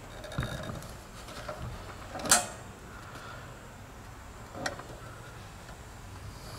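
A Mr. Heater Little Buddy propane heater being handled and set back upright, giving a sharp plastic click about two seconds in and a smaller one near the end, over a quiet background.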